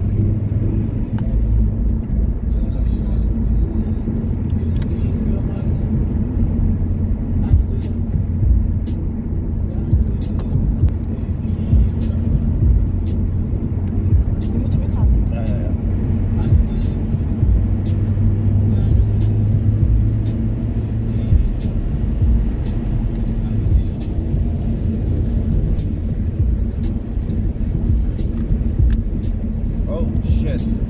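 Steady low rumble of engine and tyre noise inside a car's cabin while it drives along a motorway.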